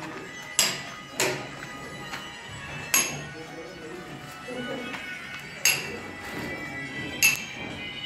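Sharp metallic clinks from construction work, five irregular strikes that each ring briefly.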